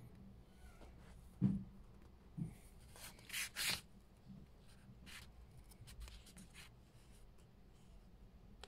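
A paperback book being handled: fingers rubbing and shifting on the paper pages, with a soft thump about one and a half seconds in and two short papery rustles a couple of seconds later. The sound is faint.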